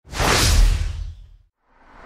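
Intro sound effect: a whoosh with a deep boom underneath, fading out after about a second and a half. A second whoosh starts to swell near the end.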